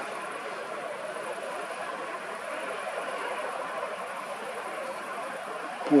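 Steady wash of road traffic, an even noise without distinct passes or clicks.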